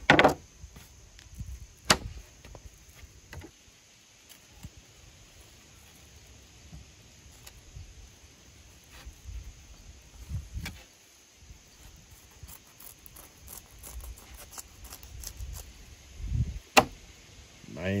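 A fillet knife slicing a walleye fillet off the frame on a plastic cutting board: quiet scrapes with a few sharp clicks and knocks of the blade and fish against the board, over a steady high chirring of insects.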